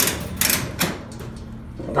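Mechanical clicks and clatter from a coin-operated ball-maze arcade game: a few sharp knocks in the first second, the loudest right at the start, then quieter.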